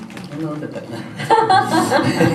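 Performers chuckling and talking as the acoustic guitar intro stops, with the laughter growing louder about a second and a half in: a fumbled start to the song.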